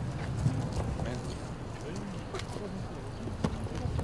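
Crowd chatter mixed with irregular footsteps of hard shoes clicking on stone paving, with two sharper clicks about half a second in and near the end.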